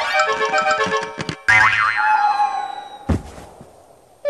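Cartoon music score: a quick run of stepped notes, then a wobbling boing sound effect about a second and a half in that fades into a held tone. A single thud comes about three seconds in.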